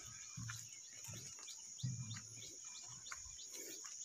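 Faint field ambience: a steady, high insect drone with scattered short bird chirps over it.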